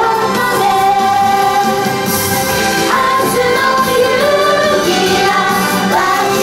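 A group of young female singers singing together over backing music, holding long notes.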